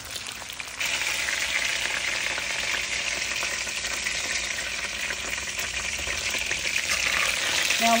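Vegetable oil sizzling in a wok as cornstarch-coated chicken pieces fry over medium-high heat: a steady hiss that gets louder about a second in.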